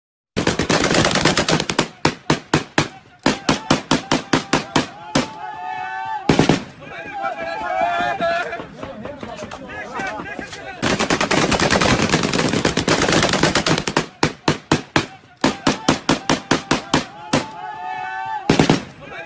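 Automatic gunfire in rapid bursts of several shots a second, with one heavier blast about six seconds in and a dense, unbroken stretch of fire in the middle. Voices call out in the lulls between bursts.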